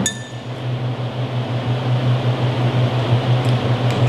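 A glass beer bottle clinks once at the start, a short bright ring, over a steady low hum. A few faint small clicks follow near the end as the bottle's wire cage is worked loose.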